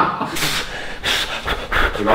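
A man panting in pain, three hard puffs of breath through pursed lips, as a physiotherapist works deep into a contracted, overloaded leg muscle.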